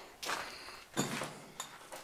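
Two footsteps on a debris-strewn concrete basement floor, about a second apart.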